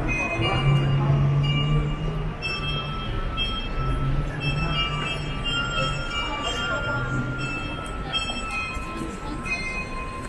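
City street traffic noise with a low engine drone that fades out about seven seconds in. High, steady tones come and go over it throughout.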